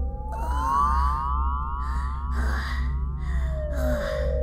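Electronic synthesizer tones sliding slowly up and then back down in pitch over a steady low drone, with soft hissing swells coming and going: a spacey, floating score.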